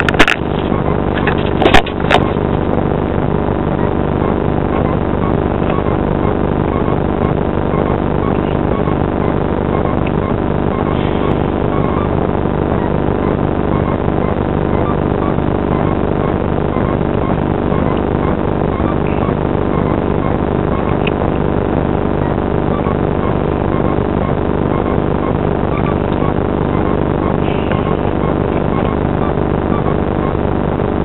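Steady engine drone, unchanging in pitch throughout, with a few knocks in the first two seconds.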